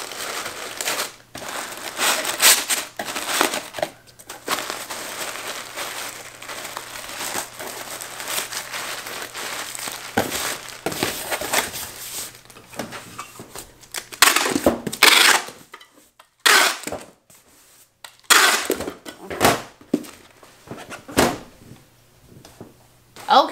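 Kraft packing paper crinkling and rustling as it is tucked around items in a cardboard shipping box. In the second half, the box flaps are folded down and packing tape is pulled from a handheld tape gun in several loud, quick strips.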